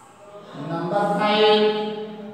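A man's voice drawing out one long, steady vowel in a sing-song, chant-like way, as in slowly dictating a word. It swells from about half a second in and fades out near the end.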